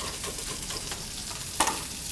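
Shrimp frying in a hot pan, a steady sizzle, with light knife taps on a wooden cutting board and one sharp knock about one and a half seconds in as the knife is put down on the board.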